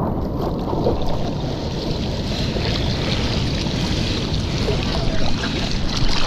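Sea water sloshing and lapping against a surfboard right at the microphone, with wind buffeting the mic.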